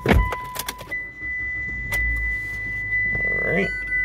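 A thump and a few clicks, then the 2010 Mitsubishi Galant's engine cranking and catching about two seconds in, settling into a steady idle. A thin, steady high tone runs through it.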